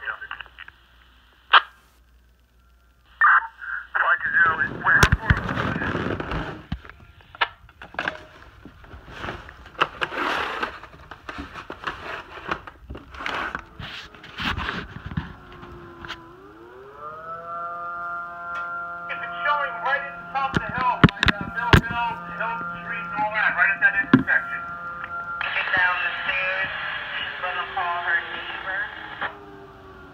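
A fire siren winds up about halfway through, rising in pitch and then holding a steady chord of several tones; it is sounding a general alarm. Before it come the end of a dispatch over a radio pager, then clicks and handling noise.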